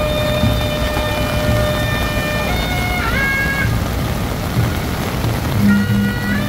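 Temple procession music: a suona plays a melody of long held notes over drum beats about twice a second, with heavy rain hissing on the street throughout.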